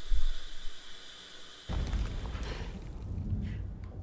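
Dramatic film sound effects: a heavy low boom right at the start, then a deep, sustained rumble from a little before halfway.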